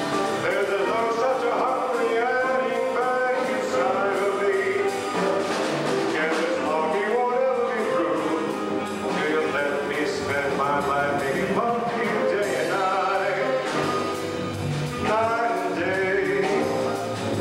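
Live jazz combo playing a tune: grand piano, upright bass, electric guitar, drums and saxophone, with a pitched melodic line carried over the band.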